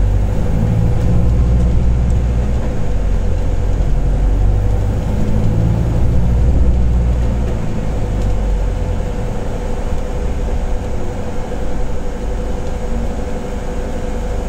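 Volvo B5LH hybrid bus heard from inside the passenger saloon: its four-cylinder diesel engine runs with a heavy low rumble that eases off about eight seconds in, with a steady whine over it throughout.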